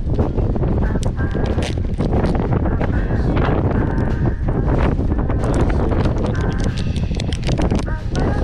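Strong wind buffeting the microphone in a heavy, continuous rumble, with the crinkling and clicking of a plastic blister-pack fishing rig package being handled and opened.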